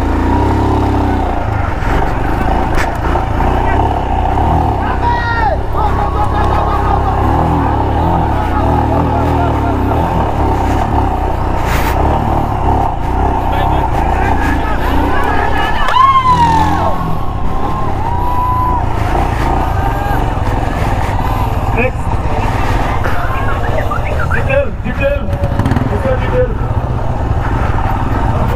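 Royal Enfield Himalayan's single-cylinder engine running at low speed on light throttle while the bike crawls through a course, with voices shouting over it.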